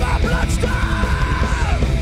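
Heavy metal band playing live: distorted electric guitars, bass and drums, with a high held note that slides down near the end.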